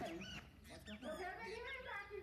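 Indistinct voices with sliding, rising and falling pitch, not clear enough to be transcribed as words.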